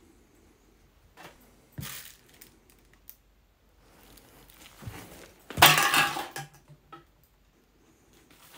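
Household clutter being knocked and trodden on in a cramped room: a few scattered crunches and clatters, the loudest and longest about six seconds in.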